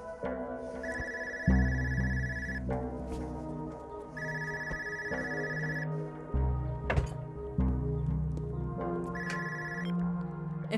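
Mobile phone ringing with an electronic ringtone: three bursts of a high steady tone, the last cut short as the call is answered, over background music.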